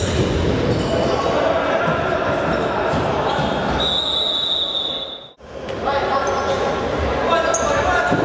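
Futsal game sound in a large hall: a ball thudding and bouncing on a wooden floor, with players' shouts echoing. A long, steady, high whistle blast about four seconds in, and the sound drops out for a moment just after five seconds.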